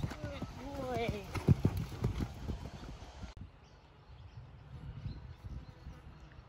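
Horse's hoofbeats on a sand arena as it lands from a small cross-pole jump and canters on, with a loud thud about a second and a half in and a person's short call over the first two seconds. A little over three seconds in the sound drops to fainter, more distant hoofbeats.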